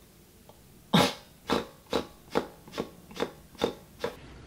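A person's mock sobbing: seven short breathy gasps, about two a second, the first loudest and the rest weaker.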